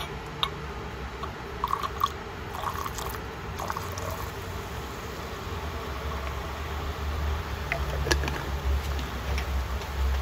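Fuming nitric acid poured into a glass beaker onto cadmium metal, which fizzes as it reacts and starts to dissolve. There are scattered small clicks over a steady hiss, with a low hum underneath.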